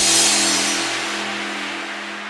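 The end of an electronic dance music mix. The beat drops out after a quick downward pitch sweep, leaving a noisy crash-like wash and a low held synth tone that ring out and fade steadily, with the hiss dying away first.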